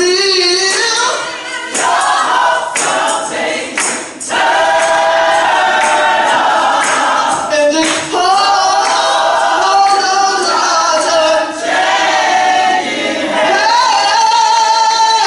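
Church choir singing a gospel song in harmony, the voices holding long notes.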